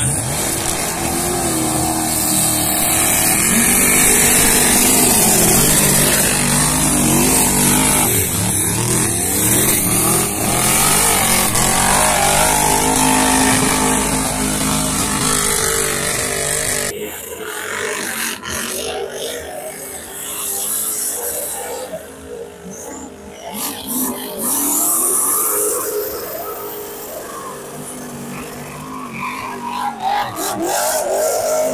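Engines of modified off-road 4x4 trucks running hard and revving as they race through deep mud, rising and falling in pitch. About halfway through the sound cuts abruptly to a quieter stretch where the engine note swells and fades.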